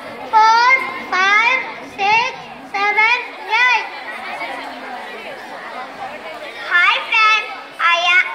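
A child's voice speaking into a microphone in short, loud, sing-song phrases, with a pause of a couple of seconds past the middle before the voice resumes.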